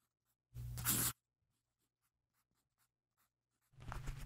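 Pen scribbling on paper: one short scratchy stroke about half a second long, starting about half a second in, followed by a few faint ticks.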